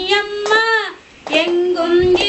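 A woman singing a Tamil devotional vilakku poojai song, two long held phrases with a short break about a second in, with hand claps keeping time.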